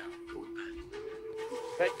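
A long, steady held tone from the film's soundtrack that steps up in pitch about a second in and is held, with a man's shout of "Hey" near the end.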